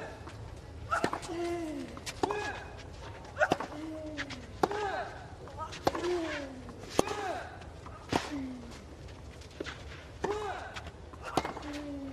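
Tennis rally on a clay court: racket strikes on the ball about once a second, about ten in all. Most shots come with a player's short grunt that falls in pitch.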